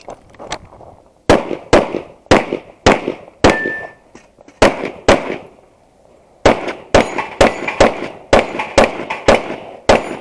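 Semi-automatic pistol shots, about fifteen in ten seconds, mostly in quick pairs about half a second apart, with a pause of about a second and a half past the middle. About three and a half seconds in, a shot is followed by a short ring of a struck steel target.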